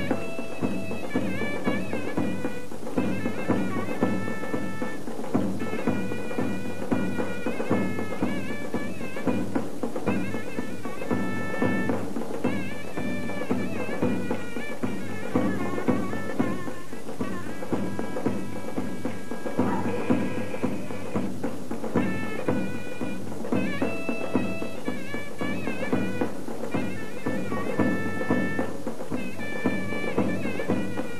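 Turkish folk dance tune from the Bursa region with a melody line, and wooden dance spoons (tongurdaklı kaşık) clicking in a quick, steady rhythm.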